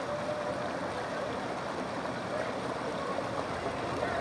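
Small boat's outboard motor running steadily, with a faint hum under a haze of water noise.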